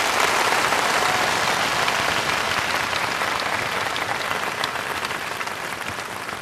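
Large audience applauding, loudest at the start and slowly fading.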